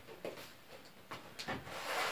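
Faint rustling and a few soft clicks as a blue heating wrap (honey decrystallizer) and its power cord are handled and laid on a table.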